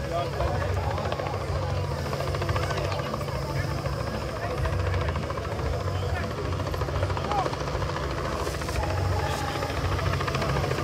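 Helicopter flying overhead, a steady low rotor sound, with people talking nearby.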